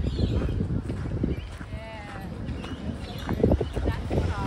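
Footsteps on a gravel path at a steady walking pace.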